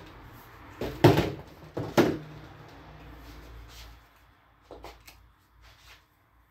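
Knocks and clunks of objects being handled: a pair about a second in and another pair about two seconds in, over a low hum that stops about four seconds in, then a few fainter knocks near the end.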